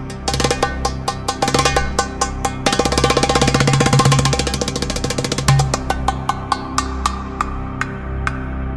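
Darbuka playing over a sustained low drone: a flurry of quick strokes that builds into a very fast roll about three seconds in, loudest in the middle, then settles back to single strokes about three a second.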